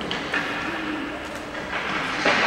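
Room noise of an indoor ice rink: a steady low hum with a couple of faint knocks.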